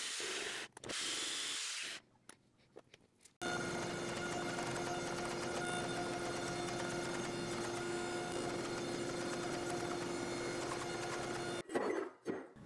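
Forge running: a steady rush with a hum running through it. Before it, a short stretch of similar hiss breaks off into near silence.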